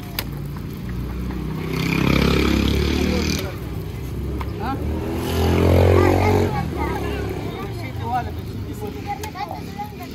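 Motor vehicles passing on the street: engine sound swells and fades about two seconds in, then again louder about five seconds in.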